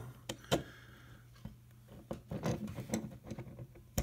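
Handling noises: a few sharp clicks, the loudest about half a second in, then lighter clicks and taps from about two seconds on, as a small antenna is connected to a handheld antenna analyzer's BNC adapter.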